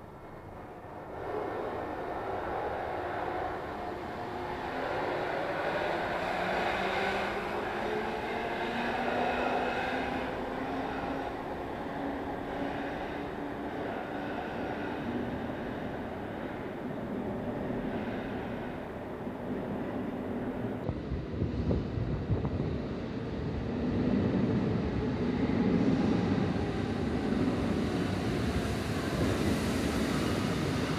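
Istanbul M6 metro train pulling out of an underground station, its motors' whine rising slowly in pitch as it gathers speed. About twenty seconds in, the sound cuts to another metro train moving through a station, with a louder, rougher rumble of wheels and motors.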